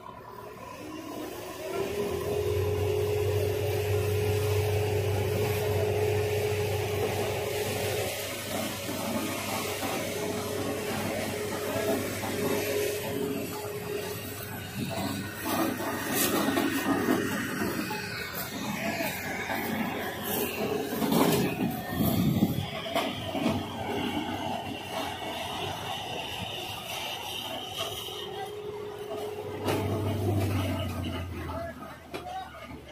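Tractor diesel engine revving up about two seconds in and holding high, steady revs to drive a sugarcane loader's hydraulic arm as it lifts the loaded cane basket and tips it into a trailer.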